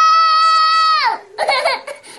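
A young girl crying out in a high-pitched wail, held steady for about a second and then falling away, followed by a shorter, broken sob.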